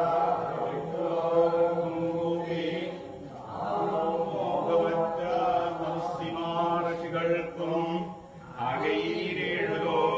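A group of men singing in unison, a Poorakkali temple song, in long held phrases that break briefly about three seconds and eight seconds in.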